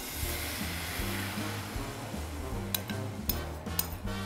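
Kimchi pancake batter sizzling as it is poured into a hot pan of olive oil, the sizzle strongest at first and fading over the first couple of seconds, with background music underneath.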